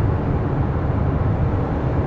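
Steady in-cab driving noise of a Fiat Ducato Serie 8 panel van cruising in fifth gear at about 70 km/h: a low, even road and tyre rumble with its 140 Multijet four-cylinder turbodiesel running smoothly underneath.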